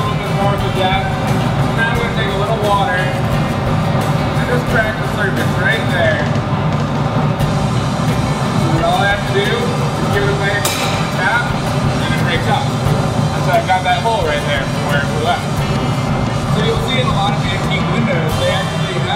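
Steady low roar of a glassblowing studio's gas-fired glory hole and furnace, under background music with indistinct voices.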